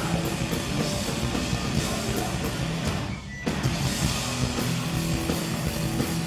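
Hardcore punk band playing live: distorted electric guitars, bass and drum kit. The band stops for a split second about three seconds in, then crashes back in.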